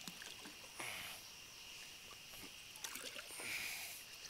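Light water splashing and dripping as a large flathead catfish is lowered into the river by hand and released, with splashes about a second in and again near the end. Insects chirp steadily behind.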